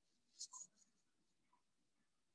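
Near silence: room tone, with a faint, short soft rustle about half a second in.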